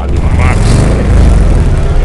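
Cartoon sound effect of racing engines running loudly, with a steady low drone that gets somewhat louder about a second in.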